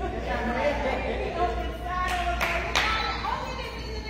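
Indistinct voices talking, with no clear words, and a few sharp hand claps a little past the middle.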